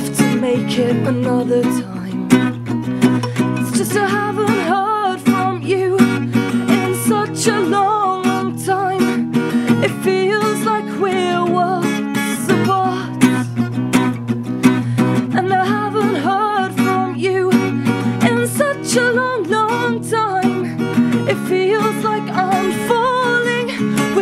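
Acoustic guitar strummed in a live song, with a woman's voice singing over it from about four seconds in.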